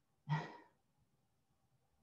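A person's brief breathy exhale, like a short sigh, about a quarter of a second in.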